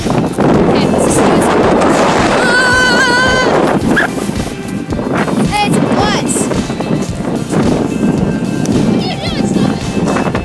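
Loud rough rushing of wind and handling on a phone microphone, with a long wavering high-pitched cry from a child a few seconds in and short rising squeals later on.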